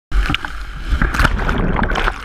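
Jet ski running through breaking surf: loud rushing water and spray with several sharp splashing hits on the camera and a steady low rumble underneath, the water washing over the camera near the end as the ski is dumped by the wave.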